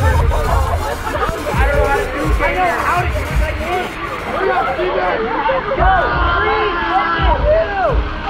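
A group of teenagers talking and calling out over one another, with music playing underneath.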